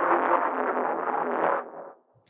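Very distorted and ugly industrial bass sound from the Native Instruments Straylight granular synth, scanning slowly through a sample believed to be a timpani. It plays for almost two seconds, dulls and fades out near the end.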